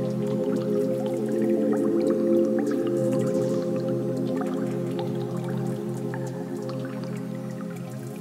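Live synthesizer music in the Berlin School style: sustained chords held low under a stream of short, quick sequenced notes. It swells to its loudest about two seconds in, then eases off.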